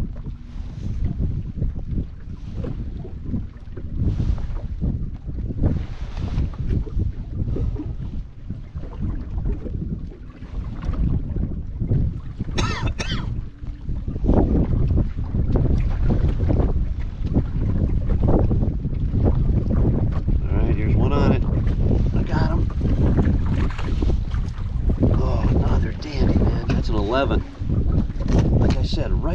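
Wind buffeting the microphone: a heavy, uneven low rumble that grows louder about halfway through. A brief sharp noise comes a little before the halfway point.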